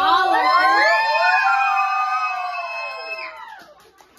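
A roomful of young children cheering together in high voices, one long held cry that fades out after about three seconds.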